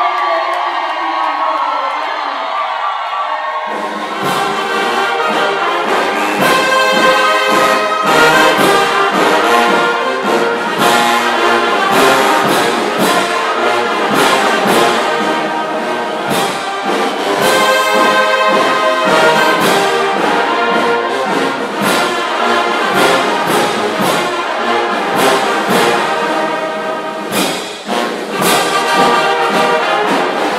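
A woman singing alone. About four seconds in, loud brass band music with a steady beat starts and plays on.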